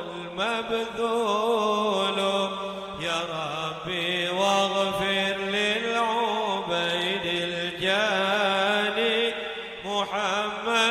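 A man's voice chanting an Arabic munajat, a devotional supplication, into a microphone, in long melodic phrases with wavering ornaments and brief breaths between them.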